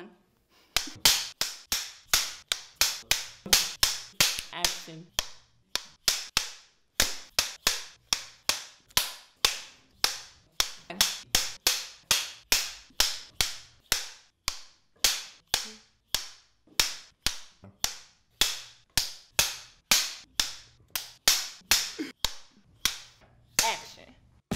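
Film clapperboard slates snapped shut over and over, one sharp clap after another about twice a second, each fading out briefly.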